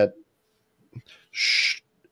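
A man's short, breathy hiss of breath, about half a second long, like a quick intake of air before speaking again.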